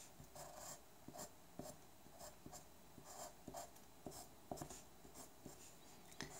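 Coloured pencil scratching on paper in faint, short strokes, about two a second, drawing thin branch lines.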